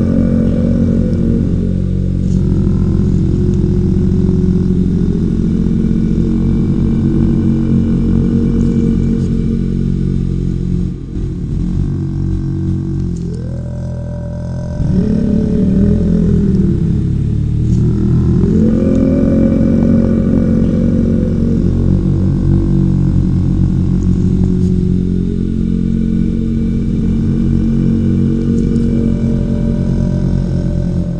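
Deep, continuous drone of many low tones layered together, dipping in loudness and sweeping up and down in pitch for a few seconds around the middle before settling back to a steady hum.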